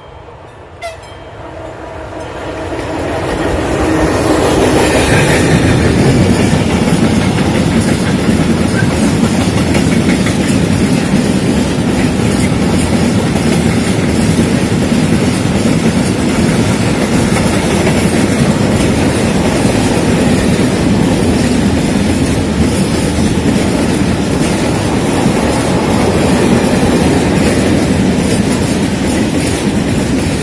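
Freight train hauled by a ZSSK class 131 twin-unit electric locomotive growing louder as it approaches, then a steady loud rolling rumble and clickety-clack of covered freight wagons passing close by. There is a short sharp sound about a second in, and a horn greeting from the locomotive is also tagged.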